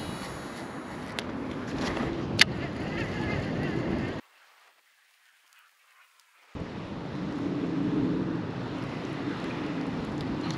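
Wind buffeting a body-worn camera's microphone, a steady rumbling noise, with one sharp click about two and a half seconds in. The sound cuts out almost completely for about two seconds from just after four seconds in, then the wind noise returns.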